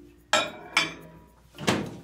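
A plate clinking twice onto a microwave's glass turntable, then the microwave door shutting with a louder knock near the end.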